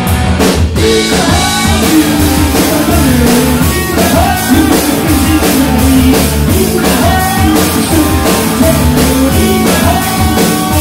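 A live rock band playing loudly: a drum kit, electric guitars and a singer's voice through the PA.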